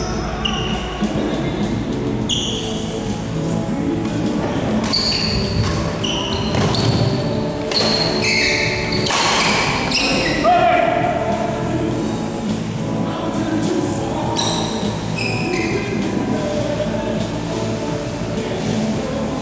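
Doubles badminton rally: rackets smacking the shuttlecock in several sharp hits, the hardest around the middle, and shoes squeaking briefly on the court floor, echoing in a large hall.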